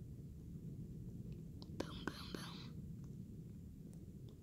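A brief whisper about two seconds in, lasting under a second, over a steady low rumble.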